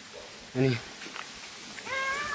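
A short high-pitched call, rising in pitch and then held, near the end; a single brief spoken word comes about half a second in.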